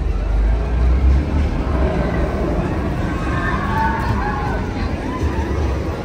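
Outdoor theme-park background: a low rumble, strongest in the first second and a half and again briefly near the end, under the faint chatter of a crowd.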